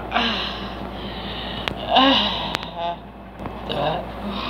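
A person's wordless breathy voice sounds: three short voiced exhalations, the loudest about two seconds in, followed by a brief croaky rattle. There are a couple of sharp clicks.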